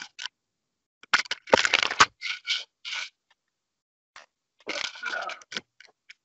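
Handling noise: scraping and rubbing in two spells of short bursts as an acoustic guitar is lifted and moved about close to the microphone.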